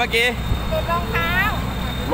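People talking in Thai, in short phrases, over a steady low rumble.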